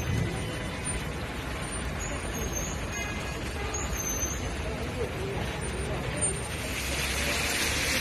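Wet city street ambience: steady traffic noise from cars and a bus on rain-soaked road, with indistinct voices of passers-by. A hiss swells near the end.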